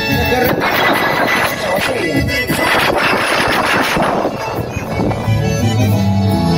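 Live button-accordion music. From about half a second in it is drowned by a dense crackling noise for about four and a half seconds, then comes back clearly near the end.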